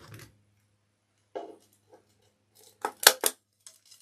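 Sharp clicks of a small handheld tool worked against the cardboard back of a wreath sign: a few faint ones about a second and a half in, then three quick, loud snaps near three seconds.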